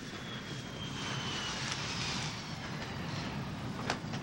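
Steady drone of airliner jet engines heard inside the passenger cabin, with a faint high whine that slowly drops in pitch.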